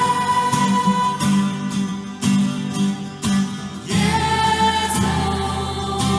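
A group of voices singing a hymn in unison, with guitar accompaniment strummed in a steady rhythm.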